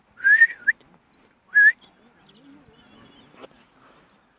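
Two short whistles: the first wavers and rises, and a brief rising note follows about a second later.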